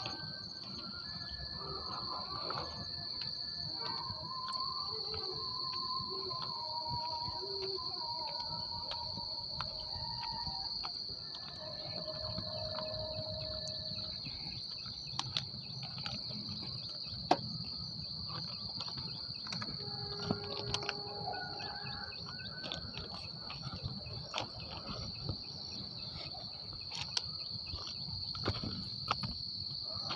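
Insects droning steadily in a single high-pitched tone, with scattered light clicks and crunches of footsteps on track ballast.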